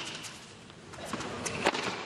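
Tennis ball struck by racquets and bouncing on a hard court during a rally: a few sharp pops spaced about half a second to a second apart, the loudest one and a half seconds in.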